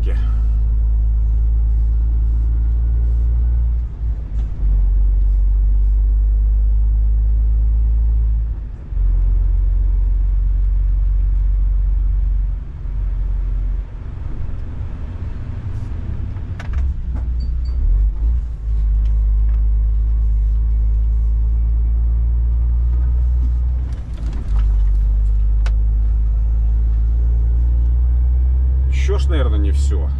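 Inside the cab of a Scania S500 truck on the move: a loud, steady low rumble of engine and tyres on a wet road, dipping briefly in level several times.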